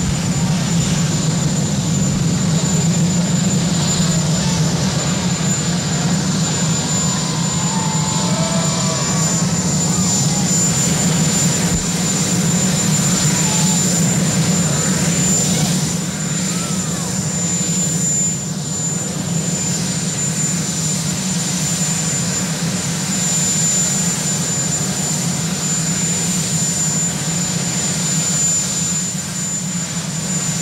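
Marine One, a Sikorsky VH-3D Sea King helicopter, running on the ground with its turbine engines going: a steady high whine over a constant low drone.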